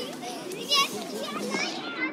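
A babble of many overlapping children's voices chattering and calling, with no music playing under it.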